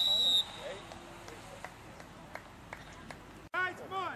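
Referee's whistle blowing a steady high tone that stops about half a second in. Faint outdoor ambience follows. Near the end the sound drops out for an instant, and voices start shouting.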